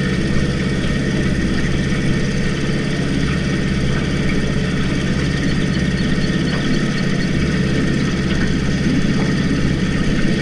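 Evinrude 4.5 hp two-stroke outboard motor running steadily, driving a small aluminium boat under way.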